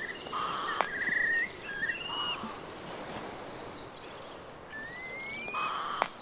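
Birds calling: repeated short chirps and trills, with a rising whistled call near the end and a single sharp click about a second in.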